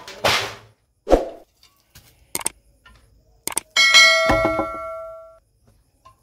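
Metal snake hook and leaning stone slabs knocking together as the slabs are shifted: a short scrape, a few sharp knocks, then a clang about four seconds in that rings on for over a second.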